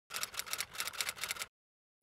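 Newsprint pages crackling and rustling in the hands as the newspaper is handled, a quick run of dry crinkles lasting about a second and a half that cuts off sharply.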